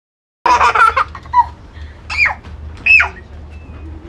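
A toddler's excited, high-pitched squeals and laughter. A loud burst starts suddenly about half a second in, followed by two short squeals that rise and fall, around two and three seconds in.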